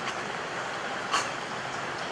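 Steady hiss-like background noise with no speech, and one short sharp click about a second in.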